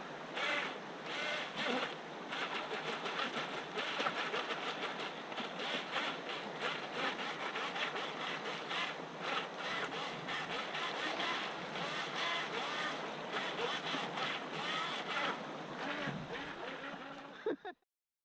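Shallow stream water running over pebbles: a steady, crackling babble. It cuts off suddenly near the end.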